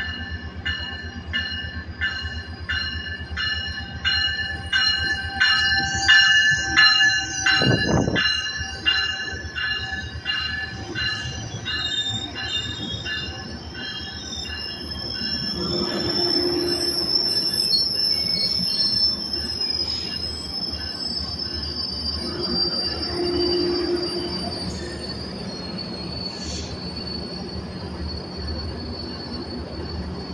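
Metrolink commuter train pulling into a station cab car first. A bell rings steadily about twice a second for the first ten seconds, while the wheels squeal. Then the bilevel coaches roll past slowly with a long, high, steady wheel-and-brake squeal, and the pushing diesel locomotive's engine comes past near the end.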